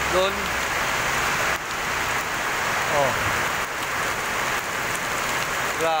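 Heavy rain pouring down: a steady, even hiss of the downpour.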